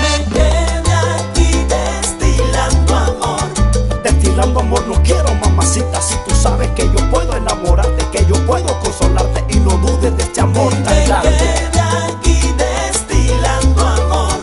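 Live salsa band with accordion playing an instrumental passage: a syncopated bass line under congas and timbales, with melodic lines above and no vocals.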